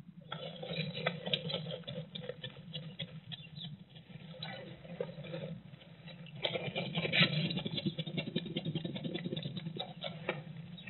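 A small animal scrabbling and rustling in shredded-paper bedding inside a wooden nest box, close to the microphone. The dense crackling starts just after the opening and grows louder and busier about two-thirds of the way in, over a steady low hum.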